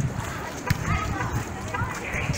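Outdoor chatter of people talking at a distance over a steady background hum, with one short knock a little under a second in.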